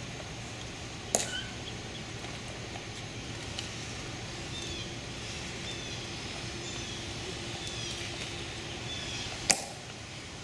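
Hushed outdoor quiet in which a bird gives a run of short, falling chirps, broken by two sharp clicks, one about a second in and a louder one near the end.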